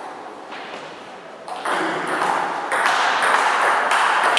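Table tennis rally: the celluloid ball clicking off rubber bats and the table, echoing in a bare hall, starting about a second and a half in. Over it runs a loud hiss that comes in at the same moment and grows louder about a second later.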